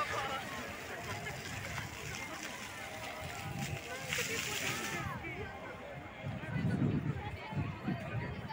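Floor-level fountain jets spraying with a steady hiss that cuts off suddenly about five seconds in, under the chatter of a crowd of voices.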